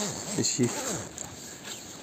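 A man's low, indistinct voice in the first second, then footsteps on wet fallen leaves over a soft outdoor hiss.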